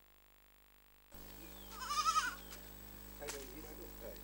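Near silence for about the first second, then a goat bleats once about two seconds in, a short call with a wavering pitch.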